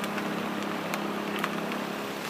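Steady low hum over background noise, with a few faint clicks.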